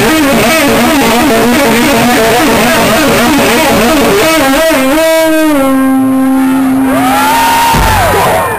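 Electric guitar solo played live through an amplifier: a stream of fast trilled and warbling notes, then a single note held for about two seconds while a bent note rises and falls over it near the end.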